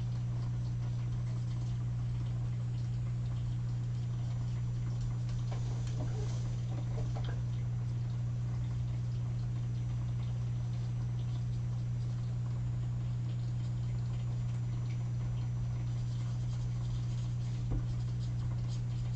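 Faint scratching and light ticks of an alcohol marker's tip flicking across paper in short strokes, over a steady low hum.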